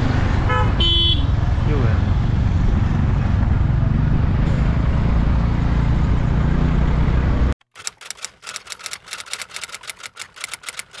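Motor-scooter ride in city traffic: loud wind rumble on the microphone over engine and road noise, with a vehicle horn honking briefly about a second in. At about seven and a half seconds this cuts off to a quick run of typewriter-key clicks, a typing sound effect for an on-screen title.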